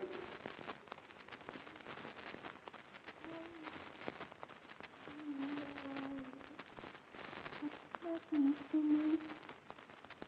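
Quiet crackling noise from an old radio drama recording, with a low held tone sounding three times: briefly about three seconds in, longer in the middle, and again near the end.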